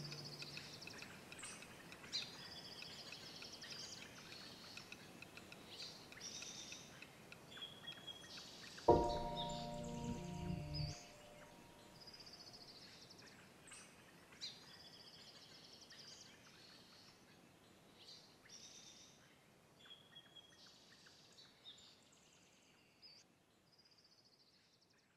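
Songbirds singing in short repeated phrases over a faint outdoor background, fading toward the end. About nine seconds in, one low musical note sounds suddenly and is held for about two seconds.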